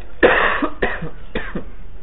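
A person coughing three times in quick succession, the first cough the longest and loudest.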